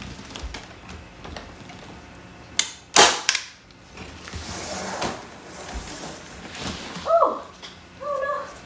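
Hand staple gun firing staples to fasten plastic netting over a moss board: a few sharp snaps about two and a half to three and a half seconds in, the loudest a pair about half a second apart. A short call that slides up and down in pitch comes near the end.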